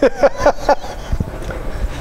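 Men laughing: several quick bursts of laughter in the first second, then dying away to a low background.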